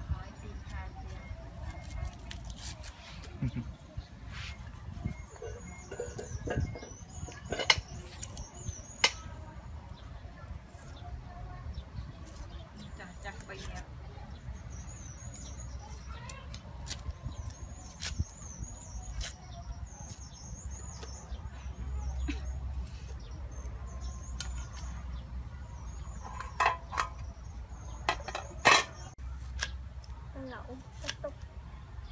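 Small birds chirping in quick high wavy calls, again and again, over a steady low rumble, with a few sharp knocks. The last knocks, near the end, are a knife cutting an onion on a wooden chopping board.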